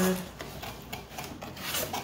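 Rubbing and scraping as a skincare set is handled, in a series of short strokes.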